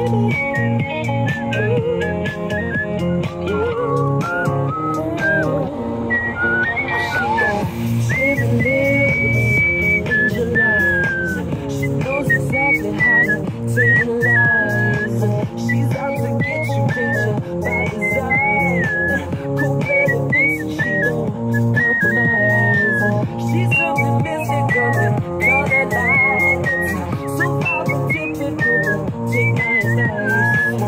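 A woman whistling a lively, high melody of short gliding notes along with a recorded pop song that has a steady beat and bass.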